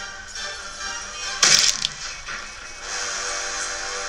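Cartoon soundtrack music with a short whoosh sound effect about a second and a half in, then a steady held musical chord.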